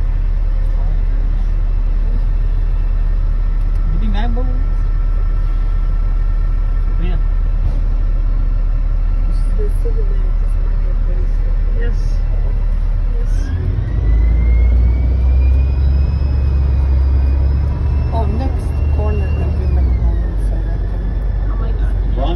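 Tour bus heard from the upper deck: a steady low rumble while it waits, then about thirteen seconds in it pulls away, the rumble swells and a whine from the drivetrain rises in pitch, holds, and drops away near the end.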